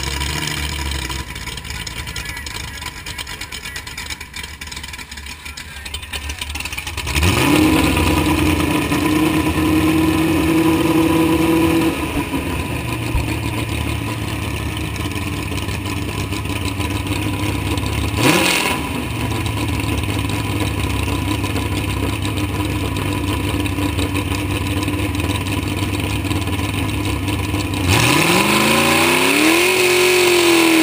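Open-header V8 engine of a modified garden pulling tractor running at low revs, then revved up about a quarter of the way in and held for a few seconds before easing off. A quick sharp rev blip comes about halfway, and it revs up again near the end.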